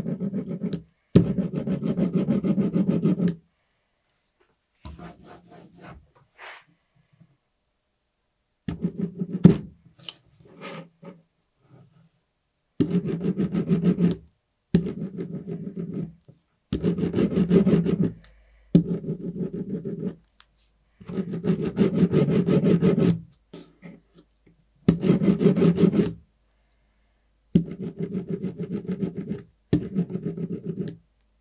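Hand brayer rolling ink over a carved wooden relief block, in repeated passes of a second or two each with short pauses between them.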